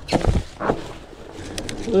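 Two dull thumps and a rattle from a rigid fat bike rolling over rocks and roots on a trail, within the first second.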